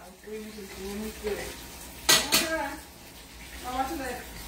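Low, quiet talk mixed with the light clatter of a cooking utensil against pots on a stovetop.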